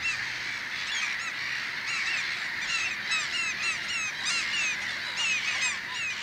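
A flock of black-headed gulls calling together: many short, shrill, up-and-down calls overlapping in a dense, continuous chorus.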